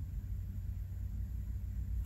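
Steady low background hum with faint hiss, with no distinct sound events.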